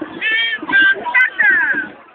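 High-pitched shouts and cries from a crowd of walkers over crowd noise, several calls held and one falling in pitch near the end.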